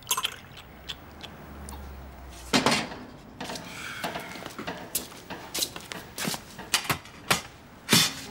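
Kitchen handling noises: a string of sharp knocks and clicks as a kettle is handled and a fridge door is opened, the loudest knock about two and a half seconds in.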